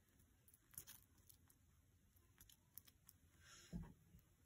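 Near silence: a few faint clicks and a soft low bump near the end.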